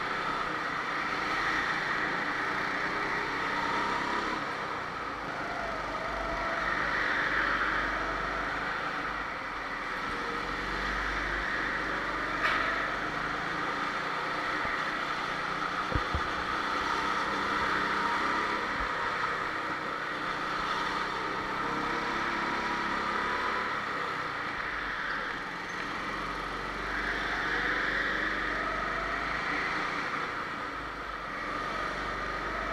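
Go-kart engines running through a race, their pitch rising and falling as the karts speed up and slow down. A few short knocks come near the middle.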